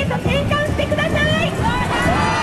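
Demonstrators' raised voices shouting and chanting, loud and continuous, with a long drawn-out call near the end.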